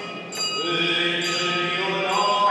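Slow chant-like music with long held notes. After a brief dip at the start, a new phrase begins about half a second in.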